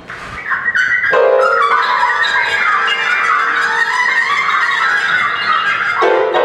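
Free-improvised jazz for trumpet and grand piano: the trumpet plays a wavering, flickering high line that enters just after the start, over the piano.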